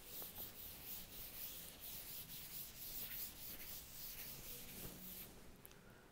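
Chalkboard duster rubbing across a chalkboard in repeated faint wiping strokes, erasing chalk writing. The strokes stop about five seconds in.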